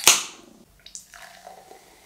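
Ring-pull of an aluminium soda can cracked open: a sharp pop and a short hiss of escaping carbonation that fades within half a second. Then the fizzy drink pours faintly into a glass.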